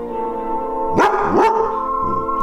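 A dog barks twice, about half a second apart, over background music with steady held notes.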